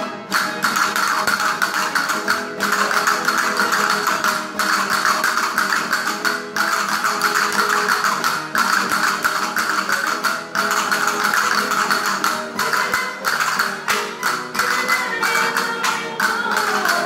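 Spanish folk string band of guitars and lute-type plucked instruments playing a lively dance tune, with the dancers' castanets clicking along. The music moves in regular phrases with short breaks about every two seconds.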